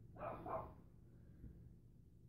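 A dog barking faintly, two short barks in quick succession near the start.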